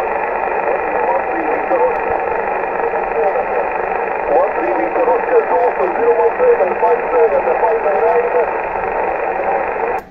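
Radio transceiver's speaker giving out a steady rush of band-limited static with a weak, wavering voice faintly audible under it: a distant station answering a call on a poor path.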